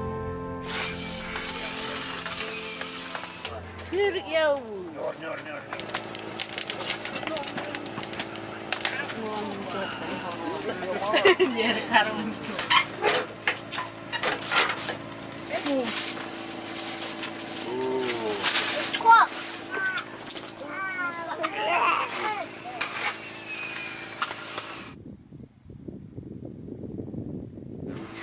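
Clicks, knocks and clatter of a metal wood stove being tended, mixed with a small child's babbling and short cries. Music fades out just at the start, and the sounds quieten near the end.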